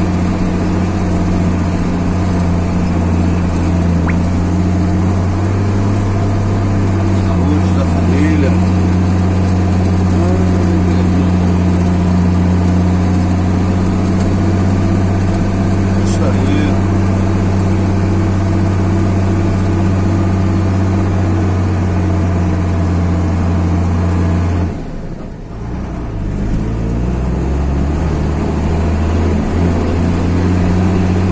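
Car engine running steadily with a low drone, heard from inside the cabin. About 25 seconds in it drops away sharply for a moment, then comes back with its pitch rising as the car picks up speed again.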